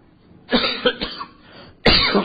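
A person coughing: a loud fit of coughs starting about half a second in, and another sharp cough near the end.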